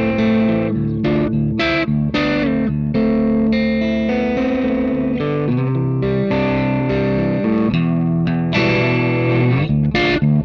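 Telecaster-style electric guitar played through a ModTone Classic Valve Distortion pedal at a low-gain, overdrive setting. Strummed chords and single notes ring with a harmonically rich, lightly driven tone.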